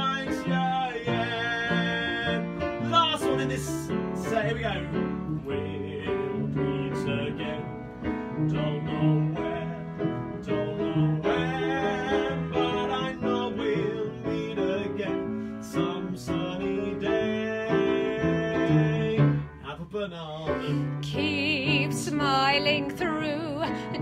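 Upright piano played with both hands in an old-time sing-along style, with a man's voice singing along at times, most clearly near the end.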